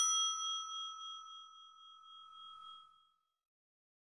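A single bell 'ding' sound effect for a notification-bell animation, ringing out and fading away over about three seconds.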